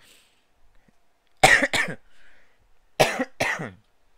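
A man coughing: a double cough about a second and a half in, then another double cough near the end. It is a cough he says has hung on for more than a week.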